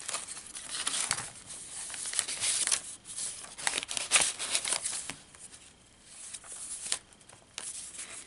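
Paper rustling and crinkling as the pages, pockets and tags of a handmade paper junk journal are handled and turned: a run of short rustles and scrapes, fainter in the last few seconds.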